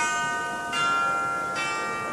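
A short jingle of bell-like chimes: three struck notes, each ringing on as the next is struck.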